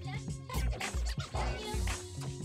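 DJ mix of beat-driven music with a heavy bass-drum beat, turntable scratching and a chopped vocal sample over it.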